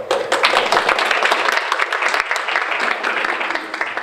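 Audience applauding: many hands clapping in a dense, steady patter that dies away near the end.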